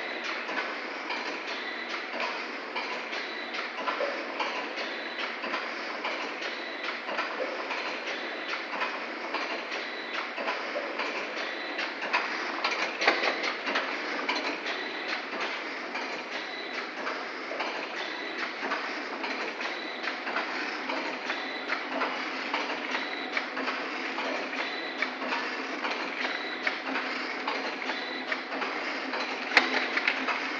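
Multi-track vertical form-fill-seal pouch packing machine running, a continuous dense clatter of rapid mechanical clicks and knocks, with a louder knock about thirteen seconds in.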